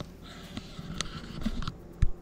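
Quiet indoor room tone with light rustling from a handheld camera being moved, and a single sharp click about a second in.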